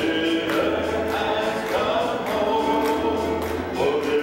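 A church congregation singing a gospel hymn together, led by a man on a microphone.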